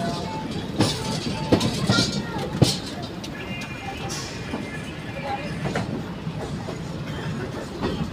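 Wheels of a moving passenger train running over the rails: a steady rumble with several sharp clicks from rail joints in the first three seconds, heard from the open coach door.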